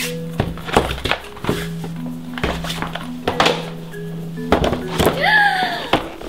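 Plastic and cardboard toy packaging handled and pulled open by hand: a series of separate thunks and crinkling knocks, over background music.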